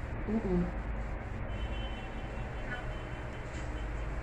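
A brief vocal sound from a person about a quarter second in, over a steady low background rumble.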